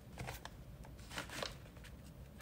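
Faint handling noises: a few light clicks and rustles as a small glass jar and a paper packet are touched and picked up from a plastic tray, in two short clusters.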